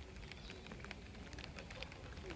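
Faint outdoor ambience with light rain pattering in small scattered ticks.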